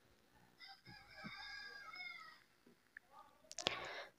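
A faint, drawn-out animal call in the background, lasting about a second and a half from just under a second in; otherwise near silence with a few faint clicks near the end.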